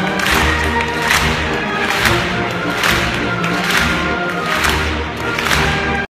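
Live symphony orchestra playing, with sustained chords under sharp accents that fall a little faster than once a second.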